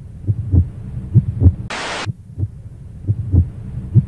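Produced intro soundtrack: low, deep thumps repeating in pairs about once a second, with a half-second burst of static-like hiss about two seconds in.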